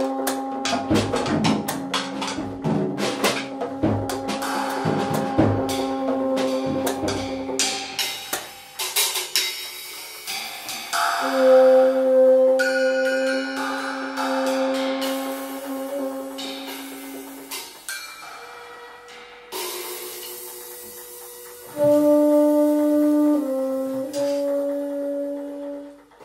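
Free-improvised music for violin, bassoon and drums: long held notes over a dense patter of small percussion strikes through the first eight seconds, then sparser sustained tones with little percussion, the notes stepping to new pitches and getting louder near the end.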